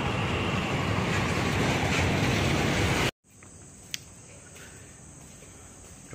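A loud, steady rushing noise of open-air bridge ambience cuts off abruptly about three seconds in. It gives way to crickets chirring steadily at a high pitch, with a single sharp click a second later.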